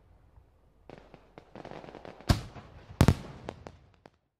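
Fireworks going off: a run of irregular sharp bangs and crackles, the loudest bang a little after two seconds and two more in quick succession about three seconds in.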